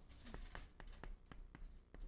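Chalk on a chalkboard, writing Chinese characters stroke by stroke: a faint run of short taps and scratches, about four a second.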